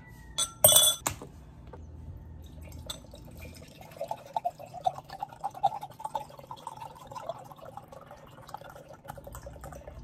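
A glass straw clinks loudly against a drinking glass about a second in. Then juice pours from a carton into the glass for about five seconds.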